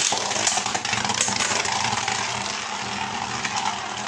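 A Beyblade (Winning Valkyrie) fired from a ripcord launcher into a large sheet-metal arena: a sharp snap right at the start, then the steady scraping whir of two tops spinning on the metal, with a few light clicks as they touch, slowly easing off.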